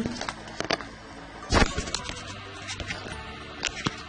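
Handling noise: a few light clicks and knocks against a faint steady background, the loudest knock about a second and a half in.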